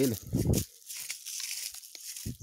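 Leaves and vine stems rustling and crackling as a freshly cut length of water vine is lifted out of the undergrowth.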